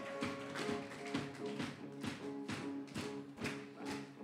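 Soft live band music from electric guitar and bass guitar: held notes under a light, regular tapping beat.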